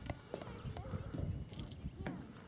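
Irregular hollow knocks and taps, a few each second: a child's footsteps and a long stick striking the wooden boards of a footbridge.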